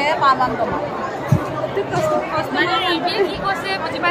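Crowd chatter: many women talking at once, with a few voices close by standing out over the babble.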